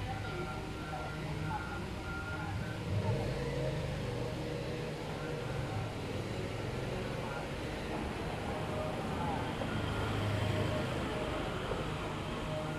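Steady city traffic rumble with faint, indistinct voices in the distance.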